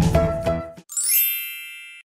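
Upbeat intro music cuts off, then a single bright chime rings out about a second in and fades away: a logo-reveal sound effect.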